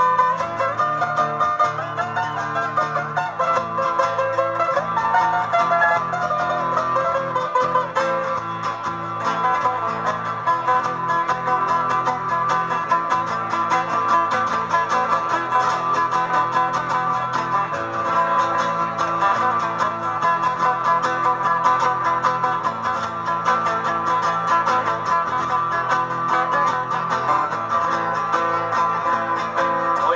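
Two acoustic guitars playing the instrumental introduction of a chilena, a running melody over plucked bass notes, with no singing yet.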